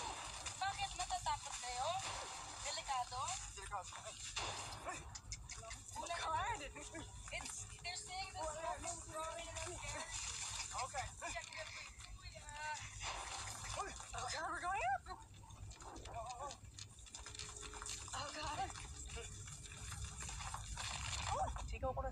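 Several people's voices calling back and forth outdoors, over a steady hiss of noise that cuts off at the end.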